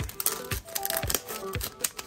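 Foil booster pack crinkling in the hands as it is opened, with a few short sharp rustles, over quiet background music.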